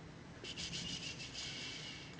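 Faint, rapid ticking of a computer mouse scroll wheel, starting about half a second in as a chart is scrolled.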